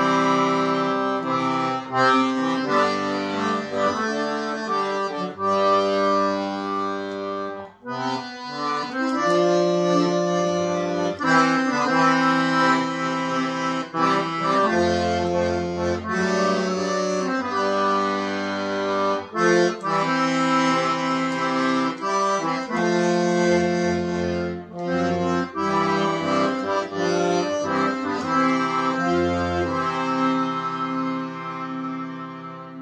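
Piano accordion playing a hymn verse: a melody on the keyboard over sustained chords, with low bass notes sounding now and then. It breaks off briefly about eight seconds in. The player is a beginner, who says he made mistakes in every verse and finds the bass buttons hardest.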